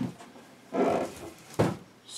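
A large cardboard box is handled and set down on a table. A short strained noise with a pitch to it comes about three-quarters of a second in. A solid thud follows about 1.6 s in as the box lands.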